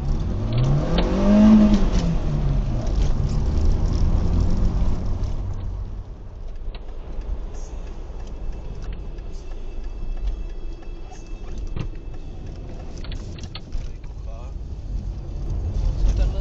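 Car driving noise heard from inside a moving car: in the first three seconds an engine note rises and falls back, then a steady low driving hum.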